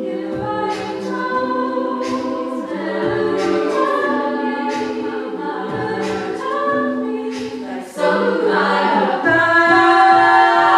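All-female a cappella group singing in layered harmony, with sharp percussive hits at intervals, growing louder about eight seconds in.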